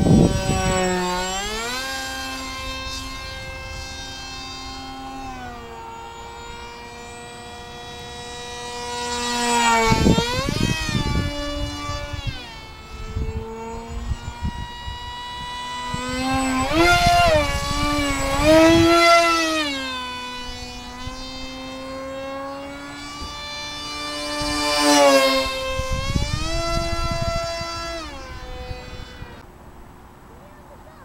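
Small foam RC YF-23 model's electric motor and propeller whining in flight, the pitch sliding up and down with throttle and fly-bys. It swells loud on three fast passes, about ten, seventeen to nineteen and twenty-five seconds in, each with a rush of noise.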